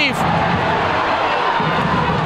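Ice hockey arena crowd noise: a steady, even wash of spectators' voices reacting to a goalie's save.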